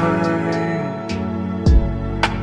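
Slowed-and-reverb edit of a Vietnamese pop ballad: sustained mellow chords, with a deep drum hit at the start and again near the end.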